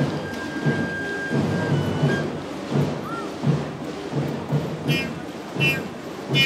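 Drums beating a steady marching rhythm for a street parade, over the general noise of the procession, with a few high-pitched notes near the end.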